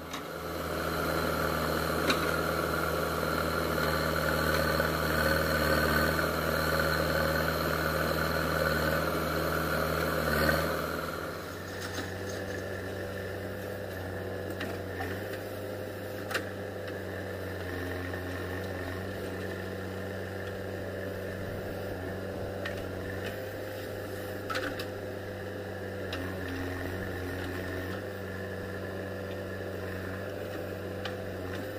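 Diesel engines of a JCB backhoe loader and a Mahindra tractor running steadily while earth is dug and loaded. The sound is louder for the first ten seconds or so, then drops to a quieter, even running with a few brief knocks.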